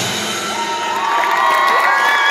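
Stadium crowd cheering at the end of a marching band's performance: the band's music breaks off right at the start, and from about half a second in, high-pitched yells and whoops from many voices rise over the general cheering.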